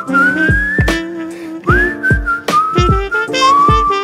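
Song instrumental: a whistled melody sliding up and down over sustained chords and a regular drum beat.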